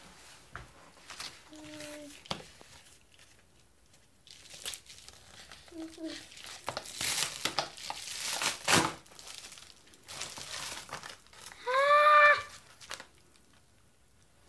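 Paper and plastic packaging rustling and crinkling as a padded envelope and tissue-paper wrapping are handled, in uneven bursts. A child's voice gives a short exclamation about six seconds in and a louder, drawn-out exclamation that rises and falls in pitch near the end.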